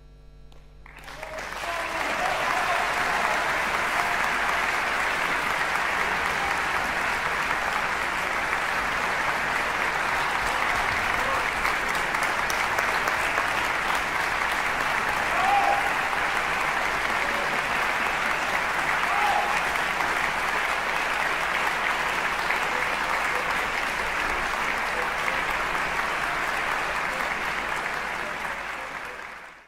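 Concert-hall audience breaking into applause about a second in, just after the orchestra's last note fades, and clapping steadily throughout.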